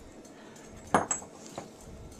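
A single sharp metallic clink about a second in, with a brief ring and a couple of lighter ticks after it.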